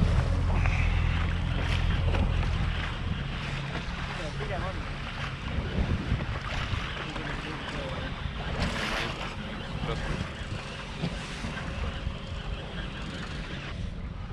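A small boat's motor runs steadily at trolling speed for about the first three seconds, then its hum drops away. Wind buffets the microphone and water washes against the boat.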